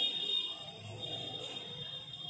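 Chalk squeaking against a blackboard as words are written, a thin, steady, high-pitched squeal.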